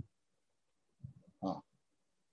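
Mostly silence over a video call, broken once, about a second in, by a short low throaty vocal sound from a man, ending with a brief breath.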